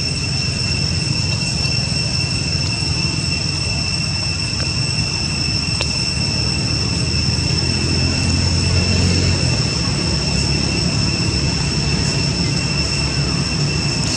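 Steady outdoor background: a continuous high, even whine typical of insects, over a low rumble.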